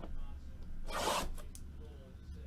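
A sealed trading-card box's packaging being torn open by hand: one short rasp about a second in, followed by a couple of faint clicks.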